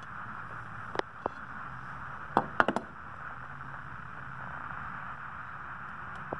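A few light clicks and taps as a small tinted glass sample is handled and slid into the slot of a handheld solar transmission meter, one about a second in and a quick cluster about two and a half seconds in, over a steady room hiss.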